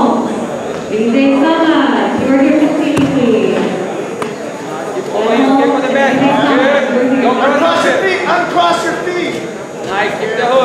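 Several men's voices shouting and calling out over one another, coaching grapplers, in a large echoing gym hall.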